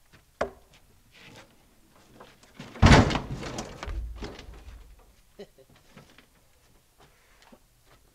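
A heavy Douglas fir log rolling across a truck's flatbed deck: one loud, deep thud about three seconds in, then a rumbling roll that fades over the next second or so, with a few smaller knocks and clunks around it.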